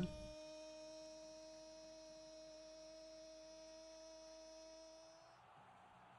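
A faint, steady humming tone with a few overtones, held for about five seconds, bending slightly up just before it stops.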